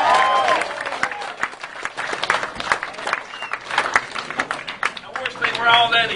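Audience applauding: a dense patter of many hand claps, with voices calling out at the start and again near the end.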